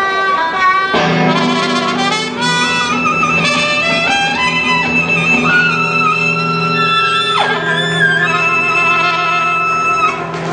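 Live blues band holding a long, drawn-out chord as a song winds to its close, with lead notes sustained over it and a quick downward slide about seven and a half seconds in.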